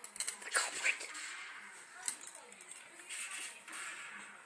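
A person's short, high voice sounds and a few knocks in the first second, then a single click about two seconds in, in a small room.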